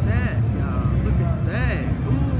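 Busy exhibition-hall ambience: a steady low hum throughout, with a few short bursts of voices.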